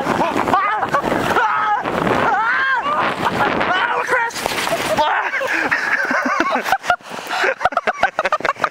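Two riders on a small plastic sled yelling and laughing as it slides down a snowy slope, over a steady rush of sled and snow noise. Then comes the crash and scramble in the snow, choppy rustling with sharp knocks and crunches near the end.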